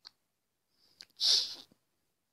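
A short, sharp, breathy burst of a person's voice, a little over a second in, after a couple of faint clicks.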